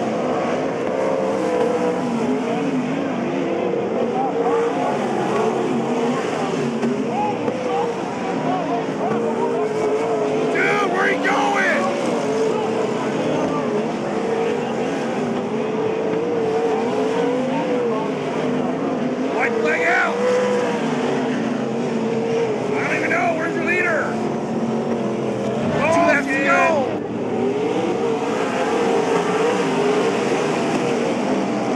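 A pack of winged sprint cars racing on a dirt oval, their V8 engines droning steadily with the pitch rising and falling as they go through the turns. A voice calls out briefly a few times over the engines.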